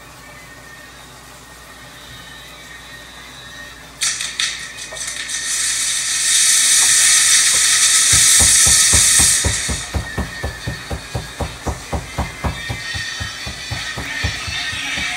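A quiet background for the first few seconds, then fireworks suddenly start spewing sparks with a loud hiss about four seconds in. From about eight seconds, music with a fast, steady drum beat comes in.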